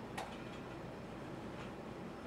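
A single short click just after the start, then faint room tone.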